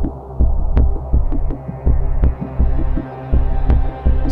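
Background score music: a deep, throbbing bass pulse that repeats about every three quarters of a second, with short low notes and light ticks over it.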